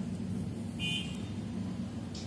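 Steady low background hum, with a short high-pitched toot about a second in.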